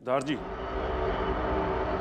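A brief voice sound right at the start, then a steady low rumble of background noise.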